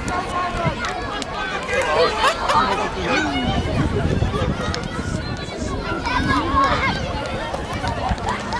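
Many overlapping voices of spectators and players calling and chattering at once, with no single speaker standing out.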